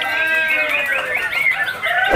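A chorus of caged songbirds, among them white-rumped shamas (murai batu), singing over one another: many overlapping whistled phrases and quick rising and falling notes.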